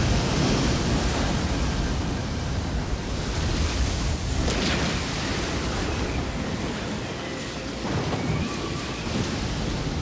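Ocean surf: a steady rush of waves, swelling about four and a half seconds in and again near eight seconds, as the song's music falls away to the sea sound.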